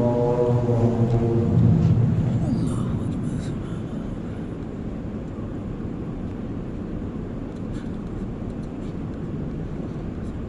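A man's voice for the first two seconds, then a steady rumbling noise for the rest, with a few faint clicks about three seconds in.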